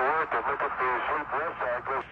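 Speech only: a man talking over a narrow-band air-to-ground radio link.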